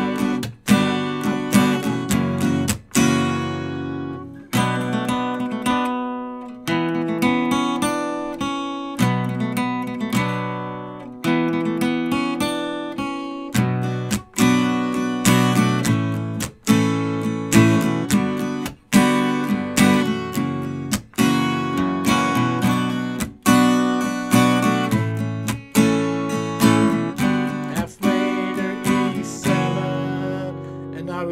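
Capoed steel-string acoustic guitar strummed in a steady rhythm, changing chords every few seconds through the verse progression of A minor, G, F and E7.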